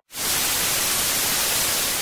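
TV static sound effect: a steady, even hiss that comes in just after the music cuts off and eases off slightly near the end.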